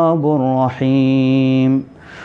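A man's voice reciting a Quranic verse in a melodic chant. After a short break it ends on one long, steady held note.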